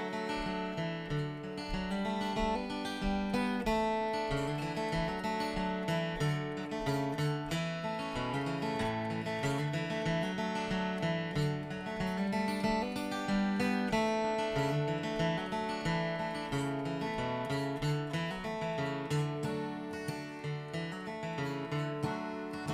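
Solo steel-string acoustic guitar playing the instrumental intro of a country song, picked and strummed chords.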